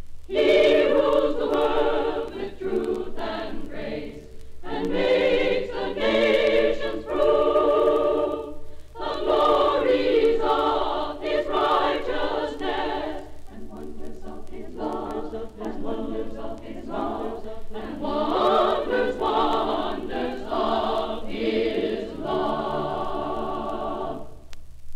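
A women's choir singing a Christmas carol in long phrases with short breath pauses, played back from a 1951 mono vinyl LP. A steady low hum runs underneath. The singing ends near the close.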